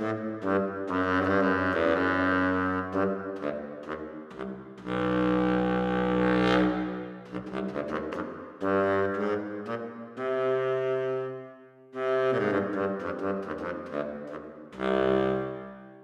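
Audio Modeling's SWAM baritone saxophone, a modelled virtual instrument, playing a slow solo line of held low notes in several phrases, each with a short break between.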